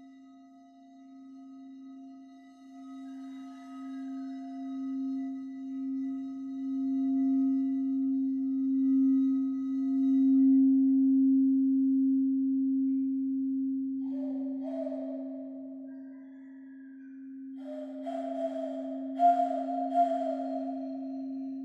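Frosted quartz crystal singing bowl rubbed around the rim with a wand, ringing as one steady low hum that swells to its loudest about halfway through and then eases off. From about two-thirds in, a breathy, wavering higher tone blown through cupped hands comes in over the hum.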